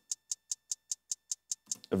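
Soloed hi-hat track of a hip-hop beat playing back from music software: a very simple, steady run of short, crisp ticks, about five a second.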